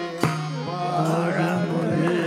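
Carnatic devotional bhajan music: voices singing over a steady harmonium drone, with mridangam accompaniment and one sharp drum stroke about a quarter second in.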